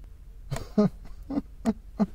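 A man's low chuckle: a broken string of short, soft laughs, about three a second, starting about half a second in.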